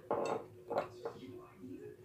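Three short clinks and knocks from handling a small bottle of gel top coat, the first the loudest, as it is opened and its brush taken out.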